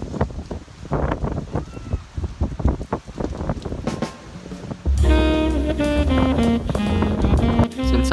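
Long-handled ladles with metal cups knocking and clattering against a stone shrine water basin and its rests, with water splashing and wind on the microphone. About five seconds in, background music with a steady bass line starts.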